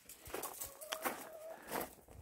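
Chickens clucking faintly in short calls, with footsteps crunching on gravel.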